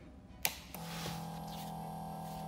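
The power rocker switch on a mini liquid nitrogen screen-separating freezer clicks on. About three quarters of a second in, the machine starts up with a steady hum that carries on.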